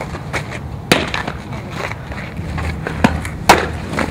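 Softball smacking into leather fielding gloves: a sharp pop about a second in and two more near the end, the last the loudest, over steady outdoor field noise.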